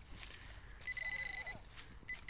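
Handheld metal-detecting pinpointer probing loose soil sounds its alert about a second in: a buzzing electronic tone lasting about half a second, with a lower warbling tone under it. The alert means there is metal close to the probe tip. Soft scraping of soil and dry stubble is heard around it.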